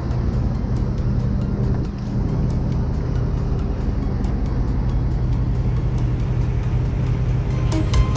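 Engine of a tractor-mounted crane running steadily while it hoists a cab, with background music over it.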